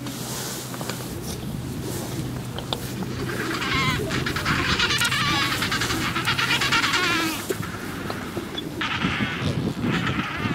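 Adélie penguins calling in a breeding colony: a loud, rapidly pulsing, bleat-like bray starts about three and a half seconds in and lasts about four seconds. A second call starts near the end.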